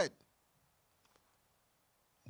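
A man's voice trails off at the start, then near silence broken by a couple of faint short clicks about a second in.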